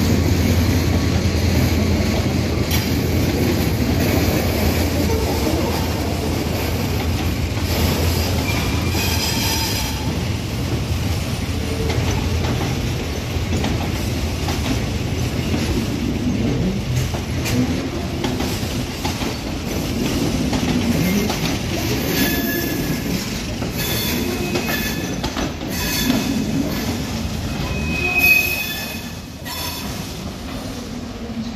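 A diesel locomotive hauling a catenary maintenance train past. The engine is a low drone that fades after the first third, under steady rumbling and clattering of the wheels over rails and points. High wheel squeals come briefly at intervals, the loudest one near the end.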